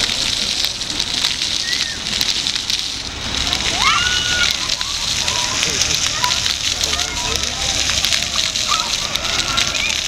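Ground-level fountain jets spraying water up and splashing back onto wet pavement: a steady hiss with many small splatters. Children's voices call out over it now and then.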